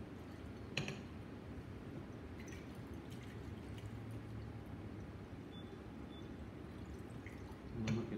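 Faint drops of iodine solution falling from a glass burette into a conical flask during a titration: a few soft ticks over a steady low room hum, with a sharper click about a second in and another near the end.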